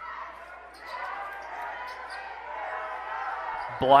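Basketball game sound in a gym: the crowd murmuring steadily, with the ball bouncing on the hardwood court as play goes on.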